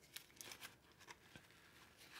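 Near silence with a few faint rustles and light ticks from a nylon knife sheath being handled.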